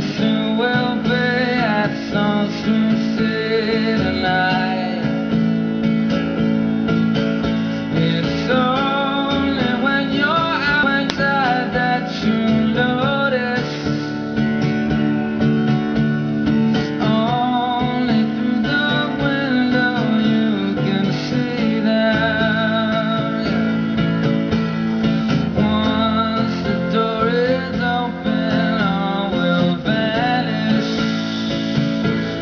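Male voice singing with vibrato over a strummed acoustic guitar. The voice comes in phrases, and the guitar carries on steadily between them.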